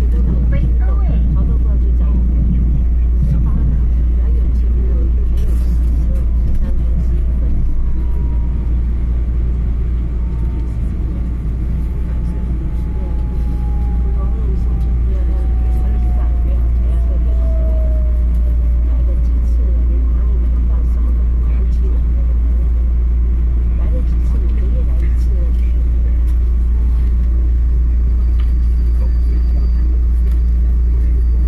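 Cabin sound of an EMU3000 electric multiple unit running and slowing into a station: a steady low rumble from the running gear, with a whine that falls slowly in pitch from about a third of the way in until about two-thirds through as the train brakes.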